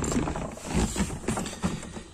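Handling noise from an aluminium gear-shift lever base being set in place on a sheet-metal floor pan: a few light, irregular knocks and clicks.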